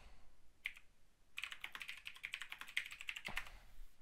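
Typing on a computer keyboard: a single keystroke, then a quick burst of rapid keystrokes lasting about two seconds.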